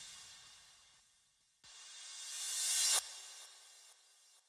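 A crash cymbal sample rings out and fades away, then, after a short gap, a reversed crash cymbal swells up over about a second and a half and cuts off sharply.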